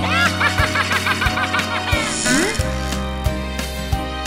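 Children's song backing music with a steady beat, over which a cartoon character gives a quick, rapid giggle in the first second and a half, and a short rising vocal glide follows about two and a half seconds in.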